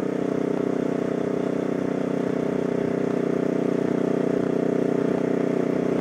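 Motorcycle engine running steadily at cruising speed, an even hum with no change in revs.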